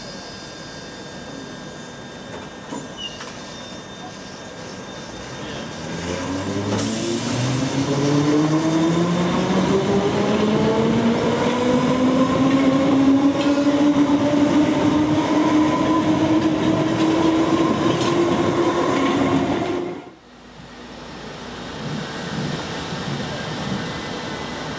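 London Underground D78 stock train pulling away from a platform. Its traction motor whine starts about six seconds in, rises steadily in pitch as the train accelerates, and then holds a steady note. A brief hiss of air comes as it sets off. The sound cuts off suddenly near the end, leaving quieter station noise.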